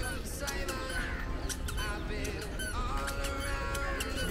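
Birds chirping and calling in the trees, many short, sharp calls one after another, over a low steady rumble.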